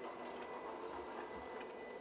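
Faint, steady background noise with no distinct events: the ambience of the recording between phrases of speech.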